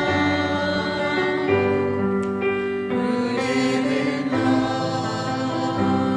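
Church choir singing an offertory hymn in slow, long-held chords.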